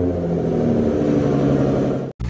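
Car engine sound effect, running steadily at a constant pitch.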